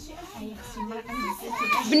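A child's high-pitched voice speaking in a few short rising-and-falling phrases, mostly in the second half.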